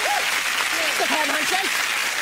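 Studio audience and contestants applauding a correct answer, with a few voices calling out over the clapping.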